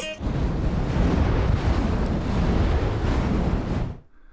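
A steady rushing noise, like surf or wind, that cuts off suddenly near the end.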